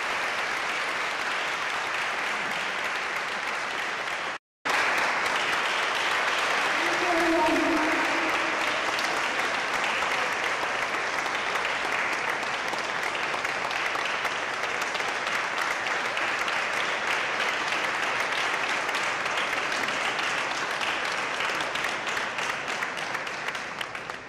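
Audience applauding steadily, with a short break to silence about four and a half seconds in, and fading at the very end.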